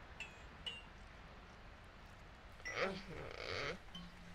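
A faint steady low hum, with two brief high chirps near the start. About three seconds in comes one short vocal sound, a low voiced grunt that runs into a breathy hiss.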